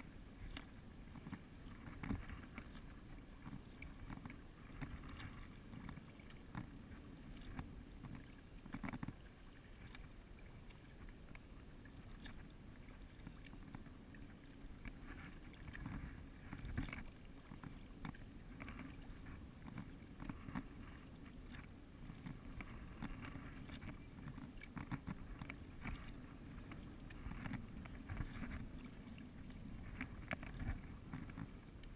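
Kayak paddle dipping and splashing in the water with irregular small splashes and drips, over a steady low rumble of wind and water on the camera.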